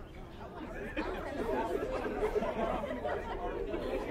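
Many people chattering at once, indistinct overlapping voices that grow louder about a second in.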